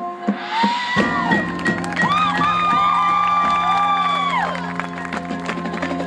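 High school marching band playing: from about a second in a low note is held while a brass chord swells up, holds and falls away.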